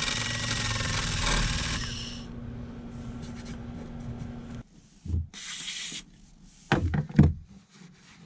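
Small cordless rotary tool with an abrasive disc running against fiberglass, grinding down the surface around a stripped screw hole so the epoxy has something to bite to. The grinding is loudest for the first two seconds, and the motor winds down and stops about halfway through. It is followed by a brief rub and a few soft knocks.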